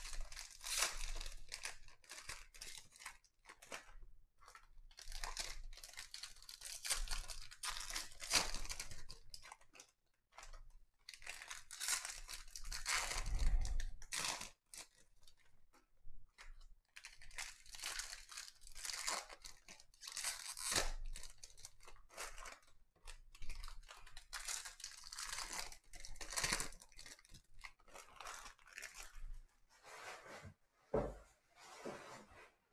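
Foil wrappers of 2021 Topps Series 1 Jumbo baseball card packs being torn open and crinkled by hand, in irregular bursts of crackling with short pauses as the cards are handled and stacked.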